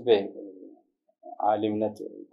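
Only speech: a man talking, with a short break a little under a second in.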